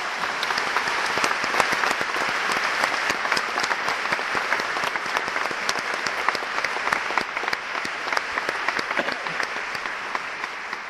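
Large concert-hall audience applauding: a dense wash of clapping with single sharp claps standing out, easing slightly toward the end.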